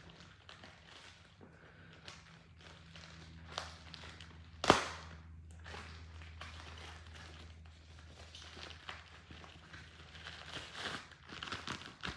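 Faint rustling and crackling of a package being handled and opened, with scattered small clicks and one sharp knock about five seconds in. A faint low hum runs underneath.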